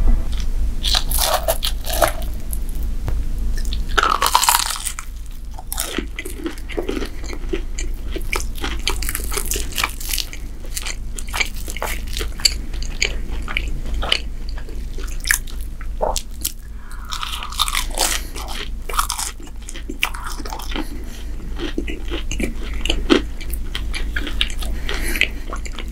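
Close-miked biting and chewing of a crisp fried pastry pocket: many short crunches and clicks in quick succession.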